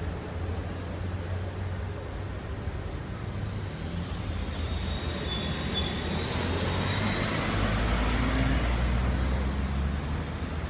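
City street traffic at a busy intersection: cars and a bus driving through, a steady low engine rumble with tyre noise. It grows louder in the second half.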